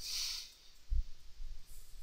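A short breath at the microphone, then a soft low thud about a second in, over quiet room tone.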